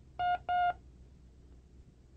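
Two short electronic beeps, each about a quarter of a second long with a brief gap between them, on one steady tone: the cue on a language-course tape that a recognition drill begins.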